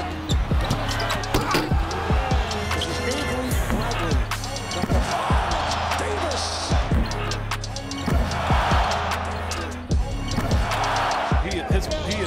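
Basketball game sound: a ball bouncing on a hardwood court in short, sharp strikes. Arena crowd cheering swells up three times in the second half, over background music with a steady bass.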